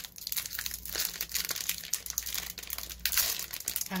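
Wrapper of a Topps baseball card fat pack crinkling as it is handled and opened, an irregular run of crackles.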